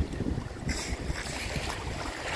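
Water splashing and sloshing as sea lions swim through a pool, with a brief sharper splash a little under a second in, over wind rumble on the microphone.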